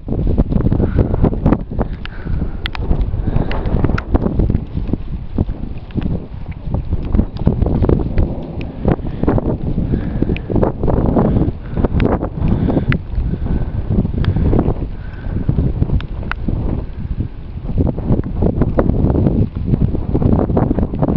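Wind buffeting the camera microphone, a loud low rumble that surges and drops in quick irregular gusts.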